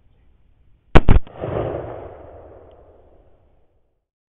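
A single rifle shot about a second in: a sharp, very loud double crack, followed by a rolling echo that fades away over about two seconds.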